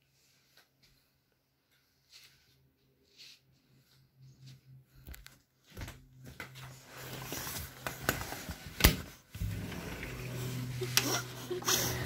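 A few faint clicks of a handheld phone being carried, then from about six seconds a louder steady outdoor hiss as the view opens onto the balcony, with one sharp knock partway through.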